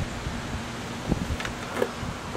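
Steady low wind rumble on the microphone, with a few faint rustles and taps from a nylon military pack being handled, about a second in and again near the end.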